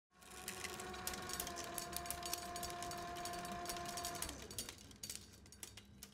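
Tape machine spinning a large reel: a steady motor hum with rapid clicking and rattling. The hum drops away about four seconds in, and the clicking thins out and fades near the end.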